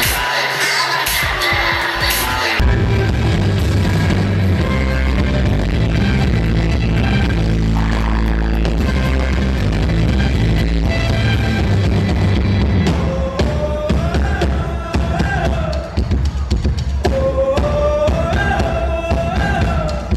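Live band playing amplified in a large hall, with electric guitar and bass over a heavy, steady low end. A voice starts singing the melody about two thirds of the way through.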